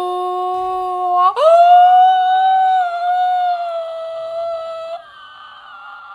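A young woman's long, wordless vocal reaction: a held 'ooh' on one pitch that leaps up about an octave just after a second in into a loud, high, sustained squeal, which falls away to a fainter, breathy sound at about five seconds.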